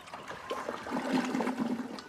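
Toilet flushing, water rushing through the bowl, with a steady low tone in the second half.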